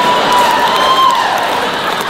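Large audience applauding after a punchline, over a thin, high, held tone that slides down in pitch about a second in.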